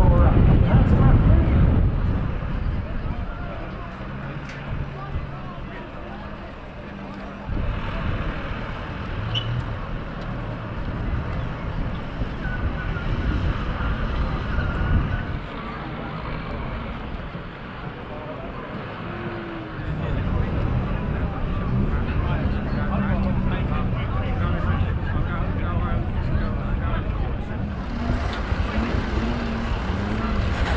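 Farm tractor engines running as wrecked banger cars are dragged off the track, with voices in the background. The sound changes abruptly a few times.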